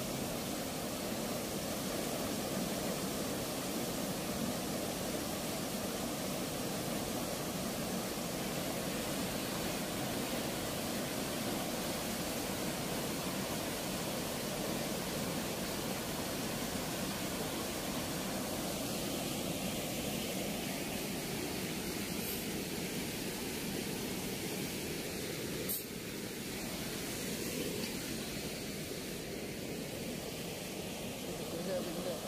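Steady rush of water pouring through an open weir sluice gate and churning in the turbulent outflow below. About four seconds before the end it changes abruptly to a slightly quieter, thinner rush.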